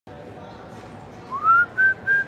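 A person whistling a tune over steady room noise: the first note starts about a second in and slides upward, and a second, higher note is held near the end.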